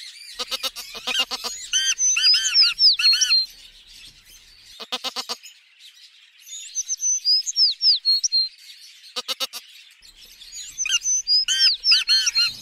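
Black francolin cock calling: a short rattle followed by a run of high, quickly sliding notes, the phrase repeated three times about every four and a half seconds.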